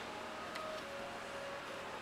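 Quiet room tone: a steady faint hiss with a few faint steady tones and no distinct events.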